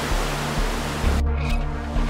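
Low, sustained background music over the rush of churning floodwater pouring through a river floodgate; the water noise cuts off abruptly a little over a second in, leaving the music alone.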